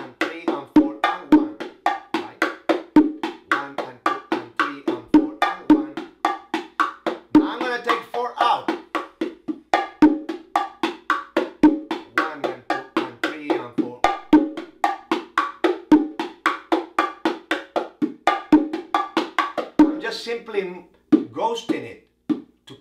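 Pair of bongo drums played by hand in the martillo groove, a steady run of quick, even strokes on the skins with ringing open tones, including the variation with the accent on four taken out.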